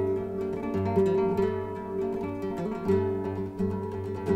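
Acoustic guitar music: quick plucked notes over held low notes.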